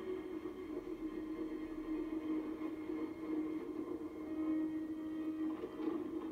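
Movie soundtrack music from a television: a calm, ambient score of long held tones.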